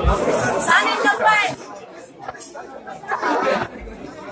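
Several people chattering and talking over one another, with one voice standing out about a second in.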